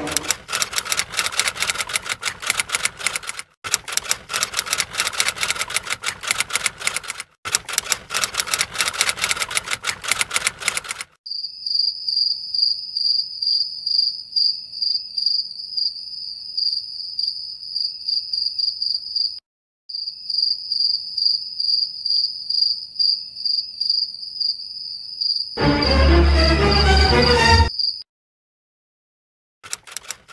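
Sound effects: rapid typewriter-like clicking for about eleven seconds, then a cricket chirping in a steady high pulsing trill that breaks off once briefly. Near the end a loud, deep sound cuts in and stops abruptly.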